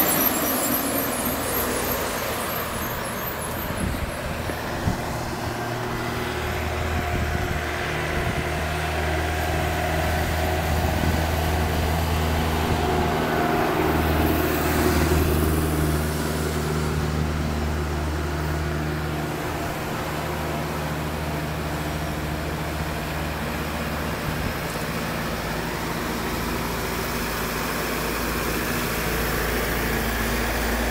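A bus passes close by at the start, then road traffic noise on a hill road, with a vehicle engine's steady low drone from about six seconds in until about twenty seconds, after which it eases to a quieter hum.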